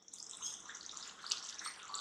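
Thick curry gravy bubbling softly as it simmers in a pan, with small scattered pops.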